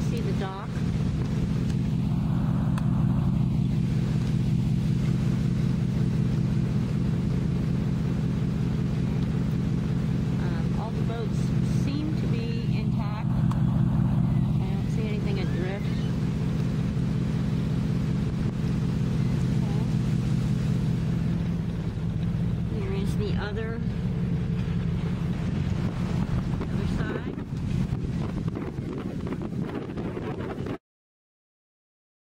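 A vehicle's engine idling with a steady, even hum. A few brief, higher wavering sounds come over it now and then.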